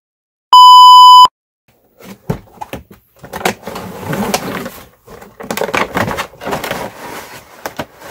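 A loud, steady test-tone beep played over TV colour bars, lasting under a second. Then cardboard and packaging rustle and crackle irregularly as a toy box is torn open and its contents handled.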